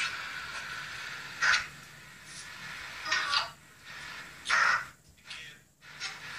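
Three short, harsh raspy bursts of noise about a second and a half apart, over a faint steady hiss.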